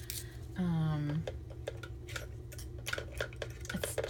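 Plastic chocolate-bar wrapper being peeled away from the bar and handled: a run of small crinkly clicks and crackles.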